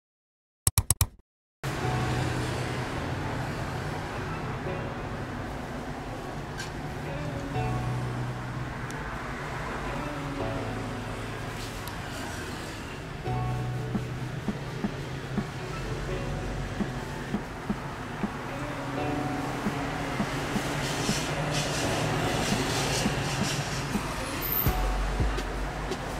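A quick burst of computer mouse clicks as an edit sound effect, then background music with a low, steady bass line that shifts note every few seconds, with light ticks joining about halfway.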